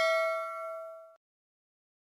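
A bell-like ding sound effect, several clear tones ringing together and fading, cut off suddenly about a second in.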